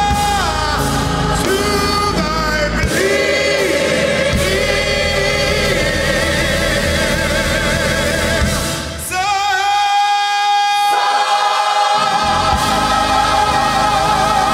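Live gospel music: a male soloist singing over a choir and accompaniment, holding long notes with vibrato. About nine seconds in, the low accompaniment drops out under one held vocal note, and the full sound comes back about two to three seconds later.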